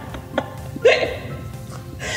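A short single laugh about a second in, over background music with steady held notes.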